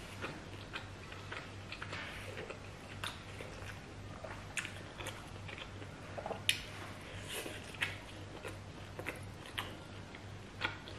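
Close-up eating sounds: irregular wet chewing, with sharp mouth clicks and smacks as roast pork, greens and blood sauce are eaten by hand. The loudest click comes about halfway through.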